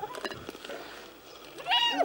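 Spotted hyena giving one short, high-pitched squealing call near the end that rises, holds and falls away.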